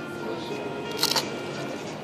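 A Siberian husky biting into a waffle cone, a short cluster of crisp crunching clicks about a second in.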